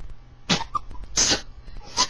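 Two short coughs, the second a little longer, about three-quarters of a second apart.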